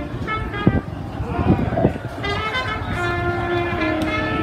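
Horn-like held notes that step from one pitch to another, over crowd voices and a few short knocks.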